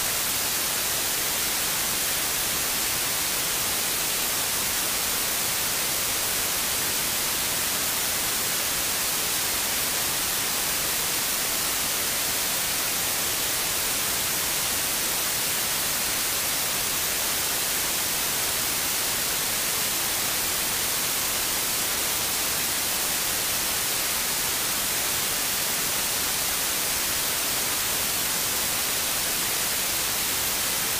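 Steady hiss of static (white noise) on the broadcast feed, which stands in for the courtroom audio while the court is muted. It holds at one even level with no other sound in it.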